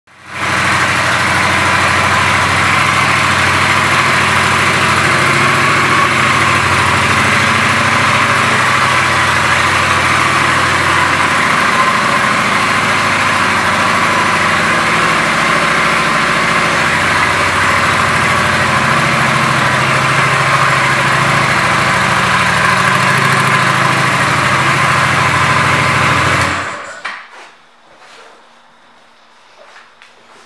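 Honda Shadow 750 Phantom's V-twin engine idling steadily, loud and close, then stopping suddenly near the end.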